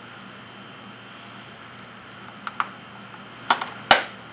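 Plastic case of a digital pocket scale being handled and clicked: two light ticks about two and a half seconds in, then two sharper clacks near the end, the last the loudest.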